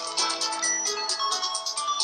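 Background music: a melody of held notes over a quick ticking beat.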